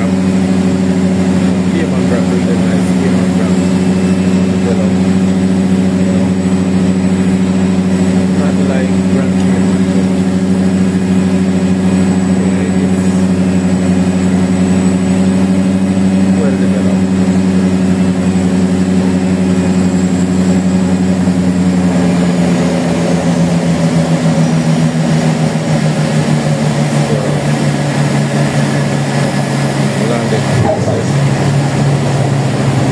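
Propeller aircraft's engines and propellers droning inside the cabin on the landing approach, a steady pitched hum. About 22 s in the pitch starts to fall as power comes back, dropping further near the end as the plane reaches the runway.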